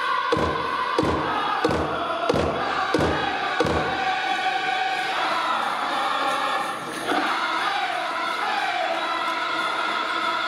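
Powwow drum group singing in unison over a big drum struck about one and a half beats a second. The drumbeats stop about four seconds in and the singing carries on alone.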